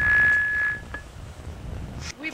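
A steady, high electronic beep from a gated-entry intercom call box keypad, cutting off about a second in.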